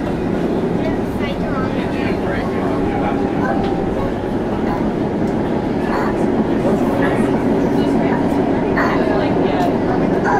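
Steady running noise inside an ION light rail car (a Bombardier Flexity Freedom) in motion on its line, a continuous low rumble that grows slightly louder about halfway through.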